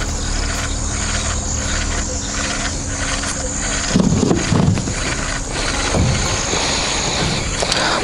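Steady low hum of a small electric trolling motor, which cuts out about halfway. The hum comes with a faint even ticking, a few a second, and then a few low knocks.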